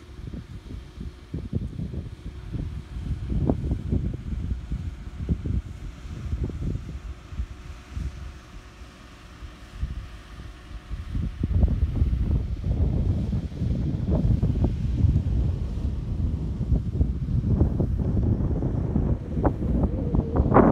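Wind buffeting the microphone in uneven gusts, with a low rumble that grows stronger about halfway through.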